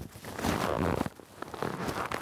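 Nylon fabric and straps of a frame child-carrier backpack rustling as a child is lowered into it, with a few light clicks in the second half.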